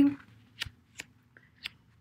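The tail of a woman's spoken word, then about four short, isolated clicks spread over the next second and a half.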